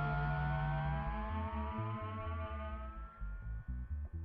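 Intro music: long held tones slowly rise in pitch over a bass line that changes note every fraction of a second.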